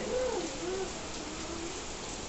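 A dove cooing faintly in the background: a few low coos that fall in pitch over about the first second, over a steady quiet hiss.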